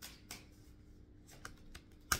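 Tarot cards being shuffled and handled: a few soft, light clicks and snaps of card stock, one early and a short cluster near the end, over a faint steady hum.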